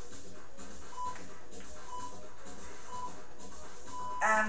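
Background workout music with four short electronic beeps one second apart, the last one a little longer: an interval timer counting down the end of an exercise round.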